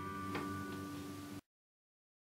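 The guitar's final chord ringing out faintly at the end of the song, with a small click about a third of a second in; the sound cuts off suddenly to silence about a second and a half in.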